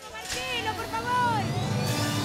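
Studio audience noise with several short whistles gliding up and down, and a sharp hit just before the end.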